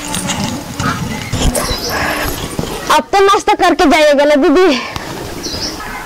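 Rustling and a few light knocks, then a woman's voice speaking loudly for nearly two seconds, starting about halfway through.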